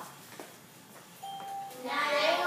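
A short electronic beep: one steady tone lasting about half a second, a little past the middle, in a quiet pause before talking resumes.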